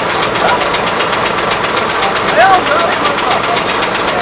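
Heavy truck's diesel engine idling with an even, rapid beat; faint voices can be heard over it.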